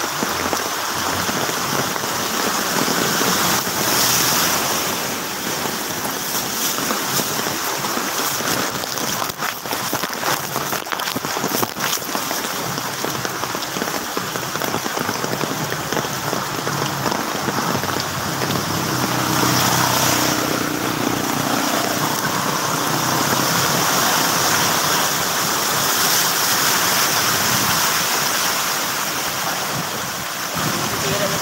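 Steady rain and floodwater splashing under vehicle tyres on a flooded street, with a few sharp clicks partway through.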